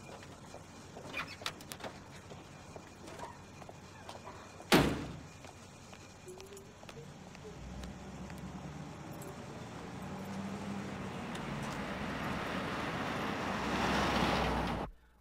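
A car door slams shut once, loud and sudden, about five seconds in, after a few light clicks and rustles. Then a passing car rises steadily louder toward the end.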